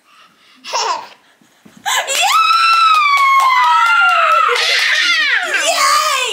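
A short vocal sound about a second in, then a woman's long, high-pitched excited cheer that slides slowly down in pitch, running into laughter, as she cheers on a toddler's first walking steps.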